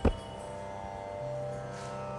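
Soft background music in a Carnatic style: a few steady held notes, with a lower note joining about a second in.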